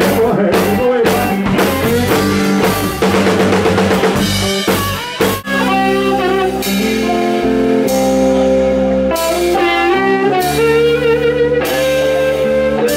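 Live rock band playing, with drum kits and electric guitar over bass. The first five seconds are a busy run of drum hits; after a brief drop in level, held guitar notes come to the front with far fewer drum strikes.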